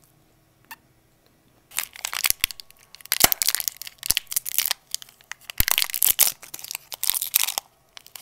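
Fingers crinkling and tearing open a foil-lined sweet wrapper close to the microphone. It is a dense run of sharp crackles starting a little under two seconds in, with brief pauses.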